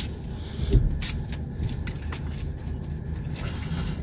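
Low steady rumble of a car idling, heard from inside the cabin. A sharp click comes right at the start, a heavier thump just under a second in, and a few lighter clicks follow.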